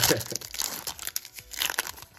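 A foil Yu-Gi-Oh Judgment of the Light booster pack torn open by hand, its wrapper crinkling and crackling in quick irregular crackles.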